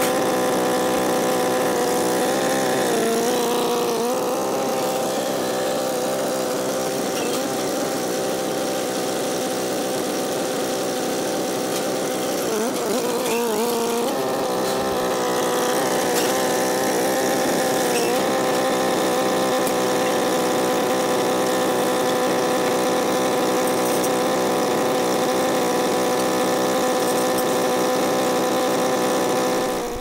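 Farm tractor engine running steadily with a front loader. Its note wavers and dips briefly about three seconds in and again around thirteen seconds in.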